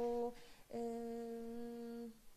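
A woman's closed-mouth 'mmm' hesitation hum while she thinks mid-answer: a short held hum at the start, then a longer steady one of about a second and a half at the same pitch.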